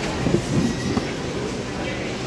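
Shopping-mall background noise: a steady low rumble with indistinct nearby voices, loudest in the first second.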